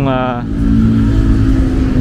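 A vehicle engine running at a steady speed, a constant low hum with rumble underneath.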